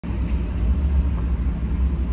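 A steady low rumble with a faint hum over it, heard from inside a vehicle.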